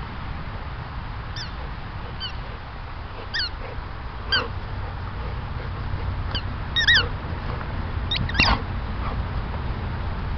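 Golden retriever whining in a series of short, high-pitched, falling squeaks, the loudest about seven and eight and a half seconds in, over a steady low rumble.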